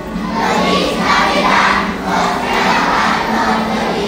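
A large group of first-grade children singing a Christmas carol together, loud enough to verge on shouting.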